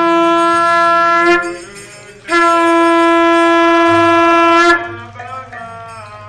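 Conch shell blown in two long, steady blasts. The first fades about a second and a half in; after a short breath the second is held for about two and a half seconds. A conch sounded this way announces the start of the temple worship.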